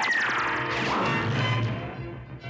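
Cartoon ray-gun sound effect as a handheld freeze ray fires: a sudden electronic zap with many pitches sweeping downward, then a rising glide about a second in, fading near the end.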